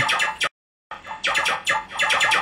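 Electronic dubstep music playing back from a DAW project: a synth tone trails off, the sound cuts out completely for under half a second, then a fast run of short chopped synth notes, about six or seven a second.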